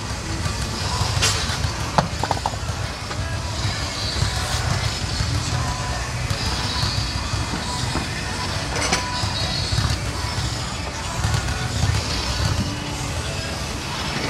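Gym ambience: a steady low rumble with background music and voices, and a few sharp clinks of dumbbells being handled on a rack, about one and two seconds in and again near nine seconds.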